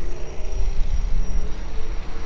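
Steady low rumble with a faint engine drone over it.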